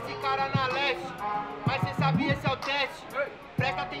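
A hip-hop beat from a speaker, with bass notes and a steady tick of hi-hats, and a man's voice over it.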